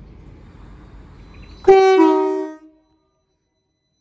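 Northern class 333 electric multiple unit sounding its two-tone horn, a higher note followed by a lower one, for under a second, about two seconds in. Before it, a low steady rumble of the train standing at the platform.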